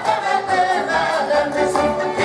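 A group of voices singing a Hungarian folk song together, steady and unbroken, as accompaniment to a circle dance.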